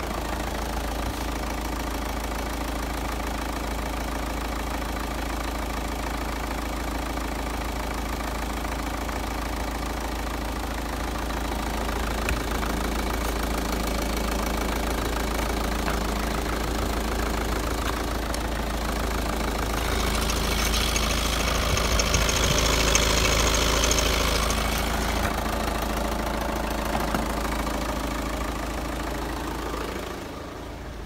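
Renault 1.9 dCi F9Q804 four-cylinder turbodiesel idling steadily in a Renault Scenic II. Its sound grows louder and brighter for a few seconds about twenty seconds in, without any change of engine speed.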